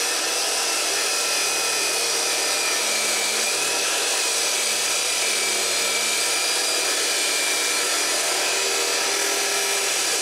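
Abrasive chop saw cutting through steel angle iron: a loud, steady grinding whine.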